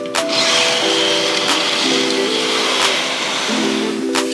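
Background music with sustained, plucked-sounding notes. From just after the start until about three and a half seconds in, a sliding noise runs under it as a window curtain is drawn open along its track.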